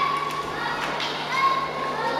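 Children's high-pitched voices shouting and calling in long held calls, with a couple of sharp knocks about a second in.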